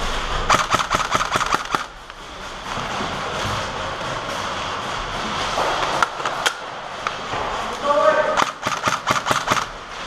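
Airsoft rifle firing two rapid bursts of shots, one about half a second in and one near the end, with a couple of single shots in between.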